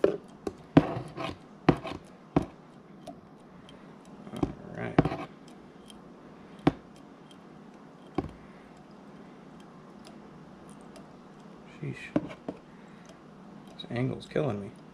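Hands working thread and bobbin at a fly-tying vise close to the microphone: scattered sharp clicks and taps, bunched in the first couple of seconds and again near the middle and the end, with quieter handling in between.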